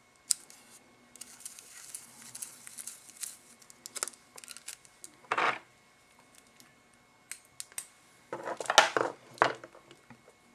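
Hands handling fly-tying materials at the vise: scattered light clicks and rustles, a short rasp about five seconds in, and a denser burst of rustling near the end as orange silk floss is brought to the hook.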